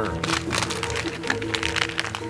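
Plastic foil blind-bag wrapper crinkling and crackling as it is torn open by hand, over steady background music.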